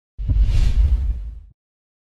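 Produced intro whoosh sound effect with a deep rumble underneath, lasting about a second and a half, fading and then cutting off abruptly.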